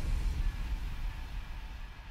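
Low rumble of a rallycross car fading away.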